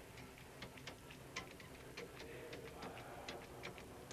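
Faint, irregular clicks of a pay phone's metal keypad buttons being pressed one after another, dialling a 1-800 access number.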